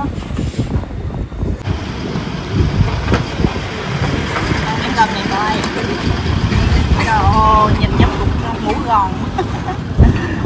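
Loud, low rumbling background noise, with other people's voices talking in the background around the middle and later part, and a few short knocks.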